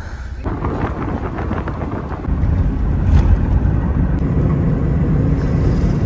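A car driving at speed on a highway, heard from inside: steady low road and engine rumble with wind noise, growing a little louder about two seconds in.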